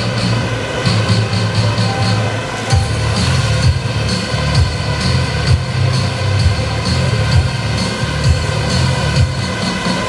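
Electronic music with a steady pulsing beat, mixed with the steady buzzing whine of several small quadcopter drones flying together.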